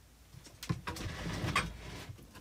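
Rustling and a few soft knocks, three or so, starting under a second in: movement by a person seated close to the microphone.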